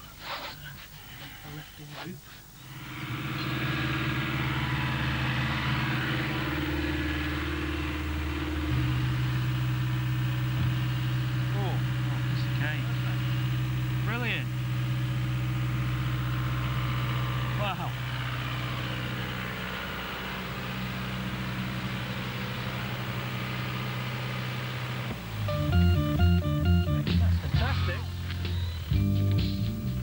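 Diesel engine of a JCB 8060 mini excavator running steadily as its arm lifts a heavy concrete turret on a sling, the engine note changing about nine seconds in as it takes the load.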